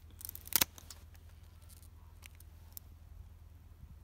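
Bypass pruning shears cutting through a dormant grapevine cane: one sharp snap about half a second in, followed by a few fainter clicks of the blades.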